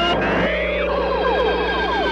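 Electronic logo sound effect played backwards. Held steady tones give way about half a second in to one slow falling glide, with a fast run of short swooping chirps above it.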